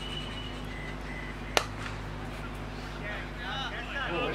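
A single sharp crack of a cricket bat striking the ball, about one and a half seconds in, followed near the end by players' voices calling out.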